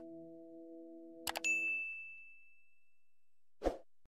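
Subscribe-animation sound effects: a quick double mouse click, then a single bright notification-bell ding that rings out for about two seconds. Under it the song's last held synth chord fades away. A short soft thump comes near the end.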